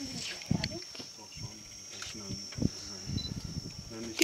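A steady, high-pitched insect drone, like cicadas or crickets, with quiet voices murmuring beneath it.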